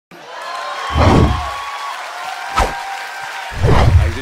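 Animated logo intro sting: sustained electronic tones with two deep booms, one about a second in and one near the end, and a sharp hit between them.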